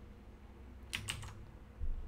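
A quick burst of about three computer keyboard keystrokes about a second in, followed near the end by a soft, low thump.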